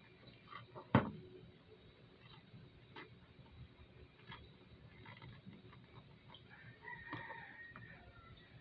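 Hands handling a gift box and ribbon: a sharp knock about a second in, then soft taps and rustling. Near the end a drawn-out call sounds in the background.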